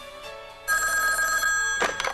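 Soft commercial music, then about two-thirds of a second in a telephone starts ringing, one loud steady ring lasting about a second.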